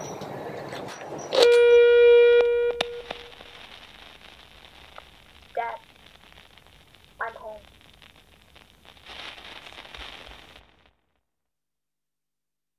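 An electronic buzzer sounds once, a steady mid-pitched buzz lasting about a second and a half, with a few sharp clicks around it. Two brief voice-like sounds follow, and near the end everything cuts out to silence.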